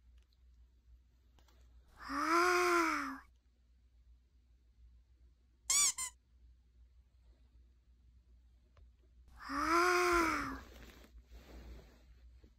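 A small curly-coated dog making two long whining moans, each about a second, rising then falling in pitch, with a brief high double squeak between them.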